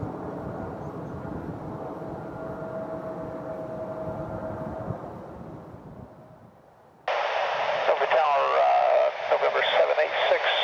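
Dassault Falcon 7X's turbofan engines heard as a distant, steady jet rumble with a faint whine, fading away about five seconds in. At about seven seconds a tinny air traffic control radio transmission cuts in suddenly, with a voice.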